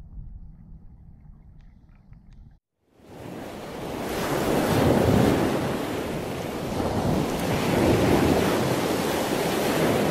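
Low underwater rumble with a few faint clicks, as from a submerged camera. It cuts out briefly, then a loud rushing water noise swells in and rises and falls.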